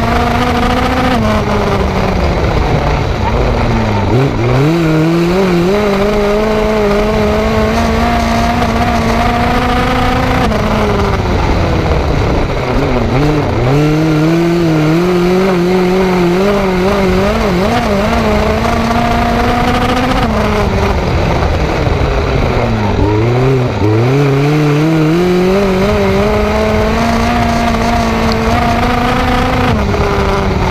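Four-cylinder Ecotec engine of a dirt-track midget race car, heard onboard, running hard through laps. The revs drop off three times, about every ten seconds, dip low for a moment, then climb back up and hold steady again on the straights, with wind and tyre noise underneath.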